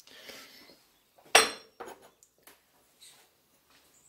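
Metal chainsaw clutch drums with sprockets being handled and set down on a workbench. One sharp metallic clink with a short ring comes about a second and a half in, then a few lighter knocks.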